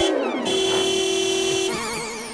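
Synthesized sound effect over the soundtrack: the beat drops out under a falling sweep, a steady held tone follows, and near the end it turns into a wobbling, warbling tone.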